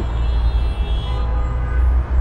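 Steady low outdoor rumble with faint sustained tones above it.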